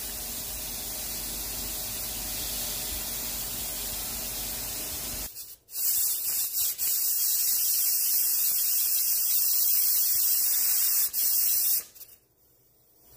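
A steady hiss at first. After a cut about five seconds in, a pressure cooker's weighted valve lets off steam in a loud, high hiss, with a couple of brief breaks.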